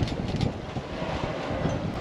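Steady low rumble of the boat's engine and hull on choppy water, with wind buffeting the microphone and a couple of short clicks near the start.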